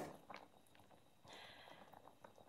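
Kitchen knife cutting broccoli on a wooden cutting board: one sharp knock of the blade on the board at the start, then a few faint taps, otherwise very quiet with a faint hiss in the second half.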